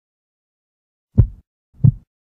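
Heartbeat sound effect: one slow double beat, two low thumps about two-thirds of a second apart, a little over a second in.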